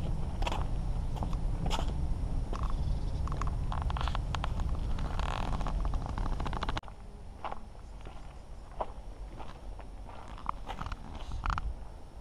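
Footsteps on a cobblestone path, heard as scattered sharp clicks over a steady low rumble on the microphone. About two-thirds of the way through, the rumble cuts off suddenly, leaving a quieter stretch with a few spaced steps.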